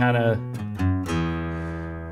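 Steel-string acoustic guitar: a few quick picked notes about half a second to a second in, then the last notes left ringing and slowly fading.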